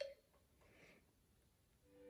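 Near silence: room tone, with faint held musical notes coming in just before the end.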